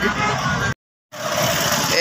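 Outdoor street noise that cuts out to a short dead gap under a second in, then steady road-traffic noise with motorcycle engines running while moving along a busy road.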